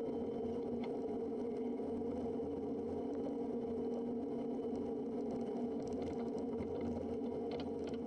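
Quest Kodiak 100's PT6A turboprop engine and propeller running steadily at low idle on the ground, a constant even drone.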